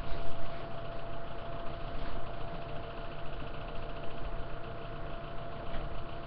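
A man drawing on an e-cigarette and blowing out the vapour near the end, over a steady low hum and hiss with a faint steady tone.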